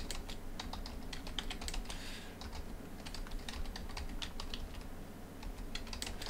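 Typing on a computer keyboard: a run of quick, unevenly spaced keystrokes.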